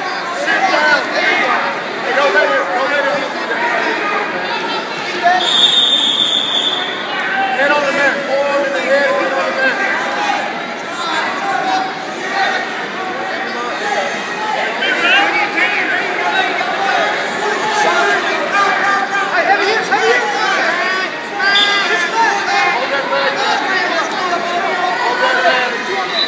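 Spectators and coaches talking over one another in a gym, with a high steady tone lasting about a second and a half about six seconds in.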